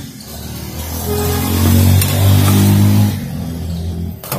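A motor vehicle's engine passing close by on the street: a low, steady hum that swells about a second in, is loudest in the middle, and fades toward the end.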